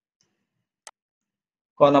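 A single short computer mouse click about a second in. A man's voice starts speaking near the end.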